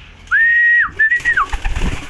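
A person whistling two short high notes: the first rises quickly, holds level and then drops off; the second, after a brief gap, rises slightly and slides down at the end.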